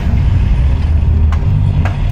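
Steady low rumble of a car's engine and tyres heard from inside the moving cabin, with a couple of short clicks in the second half.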